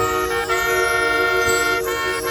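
Marching band brass sounding a loud, sustained chord that enters sharply, moves to a new chord about half a second in and changes again near the end.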